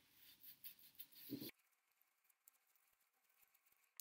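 Faint soft rubbing of damp gauze pads wiped over the face, with small clicks, cutting off abruptly about a second and a half in; near silence after.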